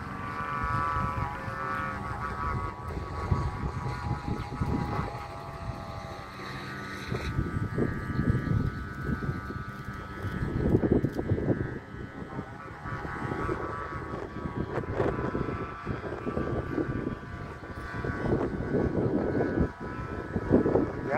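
Flute kite's bamboo flutes (sáo diều) humming several steady tones together in a strong wind, over wind buffeting the microphone in gusts.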